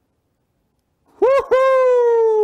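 A loud, high, voice-like note comes in a little over a second in after silence. It sweeps up, breaks off briefly, then returns and holds while slowly sinking in pitch.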